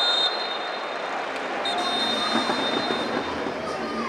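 Stadium crowd noise with a whistle blown twice: a short blast at the start and a longer, steady blast about two seconds in.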